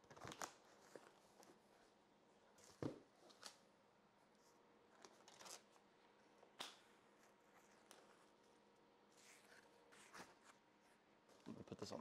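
Faint, sparse handling sounds as a cardboard shipping box is opened by hand: a few short scrapes, tears and rustles of cardboard and packing foam, the sharpest about three seconds in, with quiet between them.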